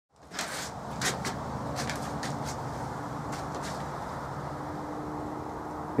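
Hands handling a small anodized aluminum part and a cotton swab: scattered light clicks and knocks, most in the first few seconds, over a steady background hum.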